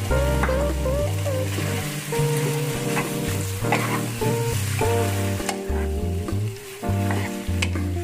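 Pork cartilage pieces sizzling in hot oil in a wok as they are stirred with a wooden spatula, with scattered scraping clicks against the pan. Background music runs underneath.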